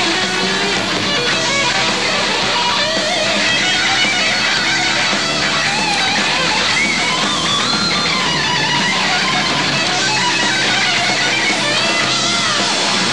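Heavy metal band playing live, loud and steady: electric guitar over bass and drums. From a few seconds in, a high lead line of bending, wavering notes runs above the band.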